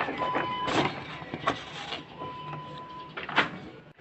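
Paper rustling and crinkling as painted sheets and a crumpled paper towel are handled, in several short bursts, the loudest near the end.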